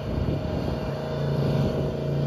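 Steady hum of a vehicle's engine and tyres on the road while driving, growing a little louder about a second in.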